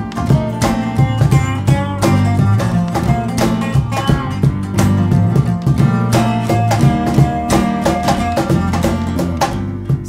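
Instrumental break of an acoustic band: resonator guitar and acoustic guitar playing over a steady cajon beat and bass guitar, with no singing. A single note is held for a couple of seconds in the second half.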